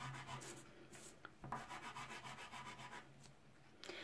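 Soft pastel rubbed across textured paper in short, faint scratchy strokes as red pigment is laid down, busiest in the first second or so and then quieter.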